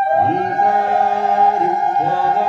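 Group of men singing a devotional chant in long held notes, over a steady electronic keyboard accompaniment.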